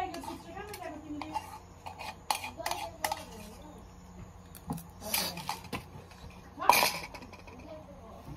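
Spoon clinking and scraping against a small bowl while eating, with a few sharp clinks in the middle and one louder sound near the end.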